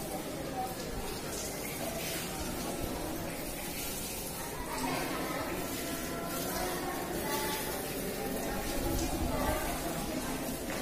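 Indistinct chatter of several people's voices over a steady background hiss, with no clear words.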